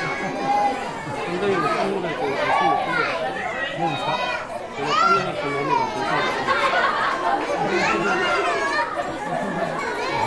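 A crowd of young children chattering and calling out at once, many high voices overlapping with no single voice clear, in a large echoing hall.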